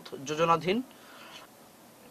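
A man's voice speaking for under a second, then a faint, brief scratchy rustle and low background noise.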